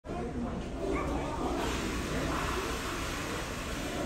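Indistinct voices, too faint to make out, over a steady background hum and hiss.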